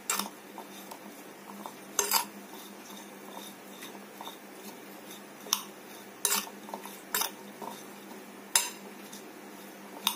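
A metal spoon tossing cauliflower florets with spices in a bowl, with about six sharp clinks against the bowl at irregular moments.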